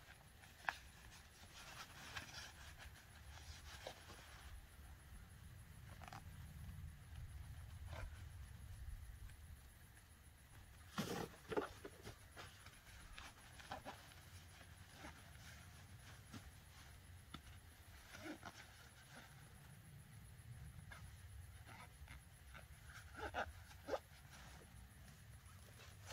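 Near silence outdoors: a low steady rumble with a few faint clicks and knocks from handling the packed pop-up tent in its nylon carry bag, the clearest about eleven seconds in.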